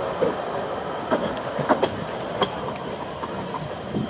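Narrow-gauge railway carriages rolling past over the track, their wheels clacking over rail joints. A few separate sharp clacks come between about one and two and a half seconds in, and the sound gets fainter as the train draws away.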